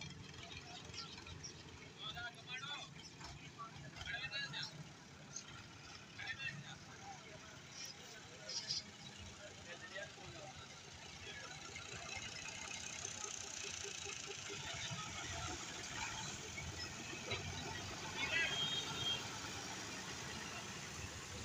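Street traffic: a farm tractor's diesel engine running as it pulls a loaded sugarcane trolley past at close range, with motorcycle engines and scattered background voices. The engine and traffic noise grow louder over the second half.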